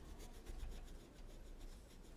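Faint rubbing of a paintbrush working acrylic paint onto a canvas in many quick, light strokes.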